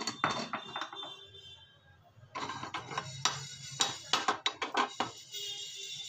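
A spatula stirring and scraping dry whole spice seeds (cumin, coriander, fennel) across a hot flat tawa to dry-roast them. Quick repeated strokes start about two seconds in, over background music.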